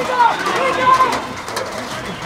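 Footballers shouting short calls across the pitch during play, several voices, loudest twice in quick succession.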